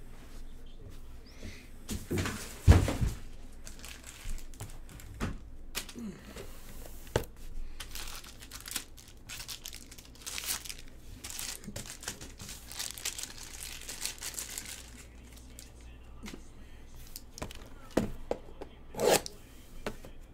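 Plastic shrink-wrap crinkling and tearing as it is pulled off a sealed trading-card box, with irregular knocks and rustles of the cardboard box being handled. A loud knock comes about three seconds in.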